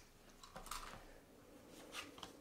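Faint handling of paper and cardstock on a desk: soft rustles and light taps as sheets are moved and set down, a brief one about half a second in and another near the end.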